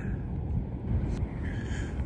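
Wind rumbling on the microphone, a steady low rumble with a single faint click just over a second in.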